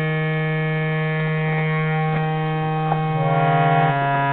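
Harmonium drone: a steady held chord of reeds. About three seconds in, a lower note is added and the chord thickens with a slight beating.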